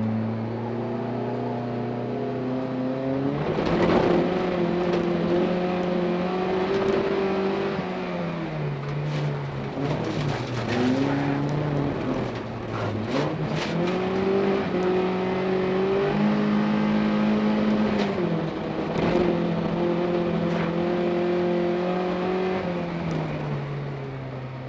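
Rear-wheel-drive folk-race car's engine heard from inside the cabin, revving up and dropping back over and over as it is driven hard through gear changes and corners on a gravel track. A run of sharp knocks and rattles comes in the middle.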